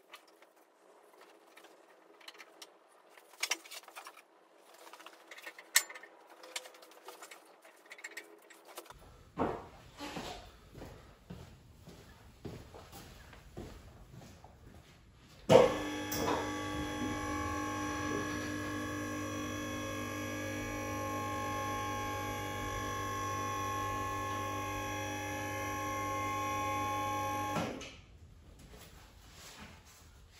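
Scattered metal clicks and knocks as a two-post car lift's arms are set under the car. About halfway through, the ProfiPaul lift's electric motor starts with a sudden jolt and runs steadily with a whine for about twelve seconds while raising the car, then stops just at the end.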